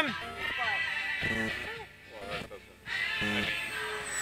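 Short, wordless vocal exclamations from people, four brief bursts with a faint steady high tone underneath.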